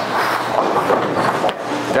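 Bowling-alley din: a steady clatter and rumble of balls rolling and pins being struck on the lanes, with a sharp knock about one and a half seconds in.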